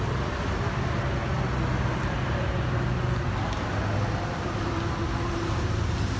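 Steady street traffic noise: a low, continuous engine rumble under a general hum of the road.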